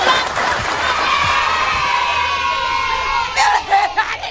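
Women shrieking in excitement: one long, high, held scream, breaking into shorter cries near the end.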